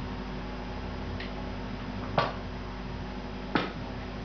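Kitchen utensils handled on a table: a faint click about a second in, then two sharp knocks with a short ring, about a second and a half apart, over a steady low hum.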